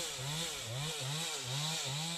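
Chainsaw cutting through a felled log, its engine pitch rising and dipping about three times a second as the chain bites into the wood.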